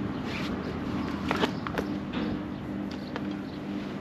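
Steady low machine hum with a few sharp clicks and footsteps on concrete.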